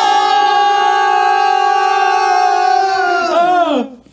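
A single long, high sung note held steady, then gliding down in pitch and cutting off just before the end.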